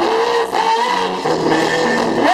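Live reggae band with a male singer holding long notes that slide up and down in pitch.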